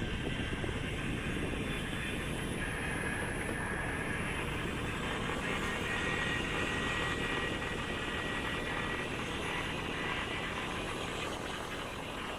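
Steady wind and road noise from a moving vehicle on the road, with a faint steady engine whine.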